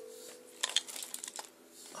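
Cables and plastic connectors of an e-bike hub motor kit being handled: light rustling and a few sharp clicks, about half a second in and again around a second and a half.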